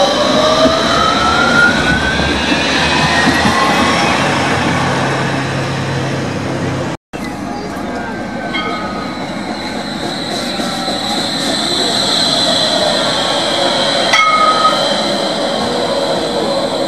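Bombardier Incentro low-floor trams running: an electric traction whine rising in pitch as a tram pulls away, then, after a brief cut, a steady high whine with a few clicks as another tram approaches the stop.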